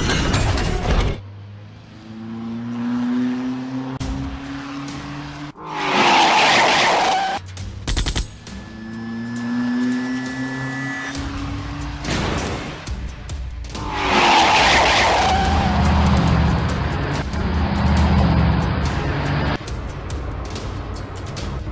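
Dubbed car sound effects: an engine revs up twice, its pitch rising each time, with loud rushing surges of cars driving past.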